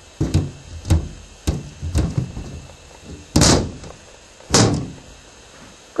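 About four sharp knocks, then two louder, heavier bangs a little over a second apart.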